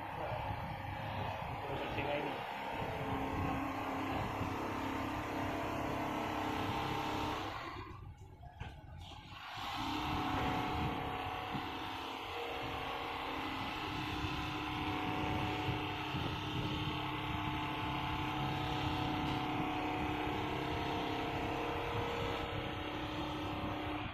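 Richpeace computerized single-needle quilting machine running as it stitches a quilt: a steady mechanical hum with a few held tones. It drops away briefly about eight seconds in, then picks up again.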